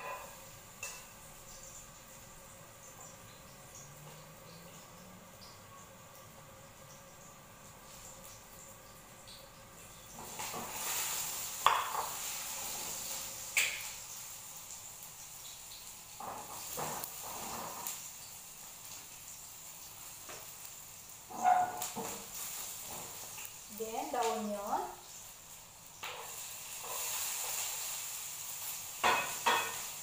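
Chopped garlic sizzling in a frying pan, with a silicone spatula stirring, scraping and tapping against the pan. The pan is quiet for about the first third, then the sizzle starts and grows louder, broken by sharp taps of the spatula.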